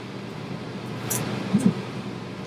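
Steady low room hum with two brief soft rustles, about a second in and again a little later, as a comb works through the bangs of a synthetic wig.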